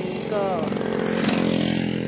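An engine running steadily, with a brief swell about a second in, under a few words of a woman's voice at the start.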